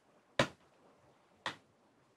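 Two light, sharp clicks about a second apart from a precision screwdriver working a tiny screw in a mini PC's metal chassis.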